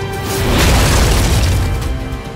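Trailer score with a deep cinematic boom that swells about half a second in and fades near the end.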